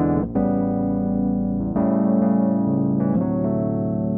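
Toontrack EZKeys Electric MK I sampled electric piano, with its Chorus preset, playing back a MIDI block of held chords. The chords change about every one and a half seconds.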